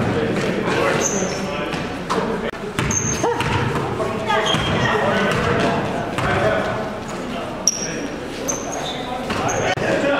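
Live basketball game sound in an echoing gym: a ball bouncing on the court, short high sneaker squeaks, and players' voices calling out.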